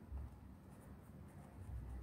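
Ballpoint pen writing on squared exercise-book paper, faint.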